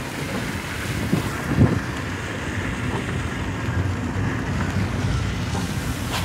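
Car driving through standing floodwater in heavy rain: a steady rushing of tyres throwing up spray, with rain and wind noise, heard from inside the car.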